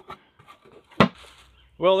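A single sharp click about a second in, over low background noise; a man starts speaking near the end.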